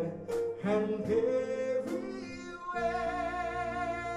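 Live band song: a man singing to electric bass guitar and guitar, with sharp beats in the first half; about three seconds in he holds one long note.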